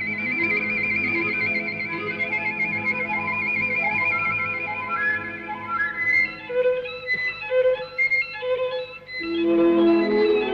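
Solo violin with orchestra: the violin holds a long high note that wavers steadily, then climbs in short stepped phrases over quiet accompaniment. The orchestra comes in louder and fuller near the end.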